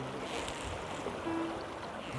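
Steady rush of river water.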